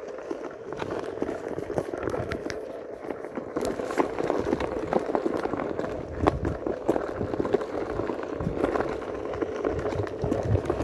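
Onewheel electric board rolling along a forest trail: a steady rumble from the tyre on the ground, broken by frequent small crackles and knocks.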